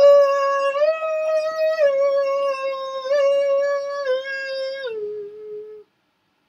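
A man singing one long unaccompanied held note. The pitch steps up and down a few times, then drops lower near the end and fades out.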